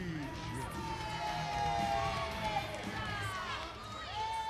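Ring announcer's voice drawing out the end of a wrestler's name in one long held call over crowd noise.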